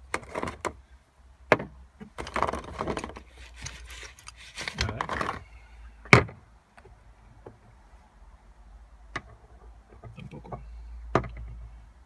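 Metal sockets and a socket wrench clinking and knocking as they are handled among charging cables and a clear plastic tool case, with the plastic rustling in between. The sharpest knock comes about six seconds in.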